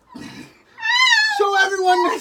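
A brief rustle, then a young child's loud, drawn-out wavering cry that drops lower halfway through.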